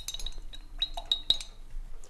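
A varnish brush clinking lightly against the rim of its varnish jar, about six short ringing clinks in the first second and a half, as the brush is loaded for the first coat of varnish.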